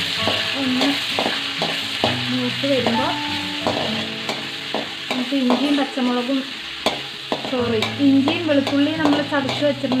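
Metal ladle stirring curry leaves and chillies frying in hot oil in an aluminium kadai: steady sizzling with repeated scrapes and clicks of the ladle against the pan. A wavering pitched tune runs underneath and is loudest near the end.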